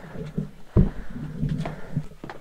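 A single loud, dull thump a little under halfway through, among quieter knocks and shuffling.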